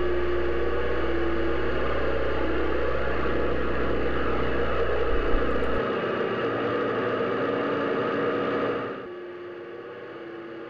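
Steady drone of propeller aircraft engines, a continuous rushing noise with a faint pitched hum. A deep hum under it cuts out a little past halfway, and the whole sound drops in level near the end.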